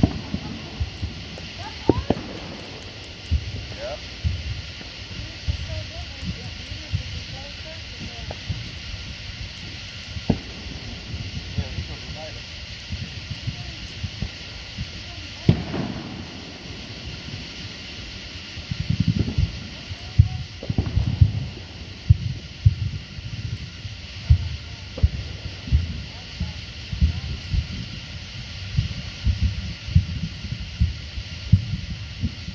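Faint, indistinct voices over a steady high hiss, with scattered short low thumps and knocks, more frequent in the second half.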